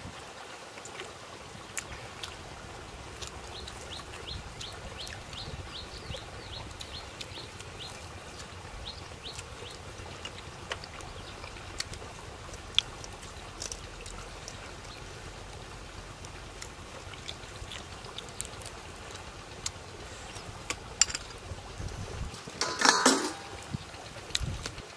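Close-up eating sounds: small wet clicks and lip smacks from chewing grilled fish eaten by hand, over a steady low background rumble. A quick run of faint high chirps repeats in the first half, and a louder crackly burst comes near the end.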